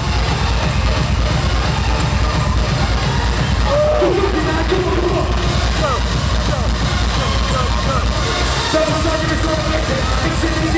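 Loud live dance music played over an arena PA, with a steady bass beat and vocals over it, picked up from within the crowd.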